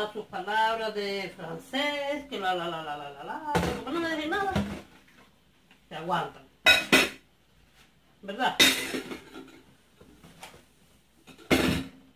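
Dishes clinking and knocking in a kitchen sink as they are washed by hand, a few separate sharp knocks spread through, with a woman's voice over the first few seconds.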